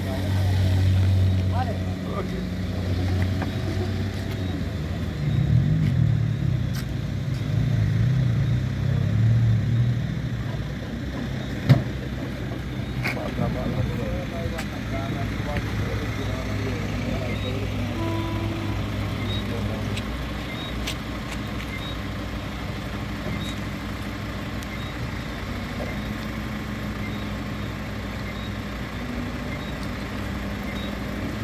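A vehicle engine idling steadily, with indistinct voices of people talking over it about a quarter of the way in. A single sharp knock comes just before halfway.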